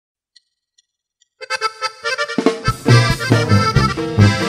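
Three faint ticks, then a norteño button accordion starts the song's intro about one and a half seconds in, with bass and drums joining about a second later in a lively norteño rhythm.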